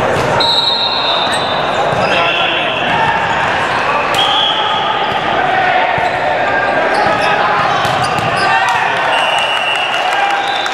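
Voices and calls echoing around a large gymnasium during an indoor volleyball rally, with sharp slaps of the ball being hit and short squeaks of sneakers on the hardwood floor.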